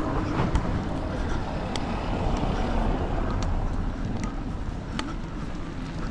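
A car driving past on a cobbled street, its tyres giving a steady low rumble, with a few sharp clicks scattered through.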